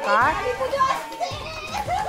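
Excited children's voices shouting and cheering in high, swooping calls, loudest just after the start, over hand clapping and music.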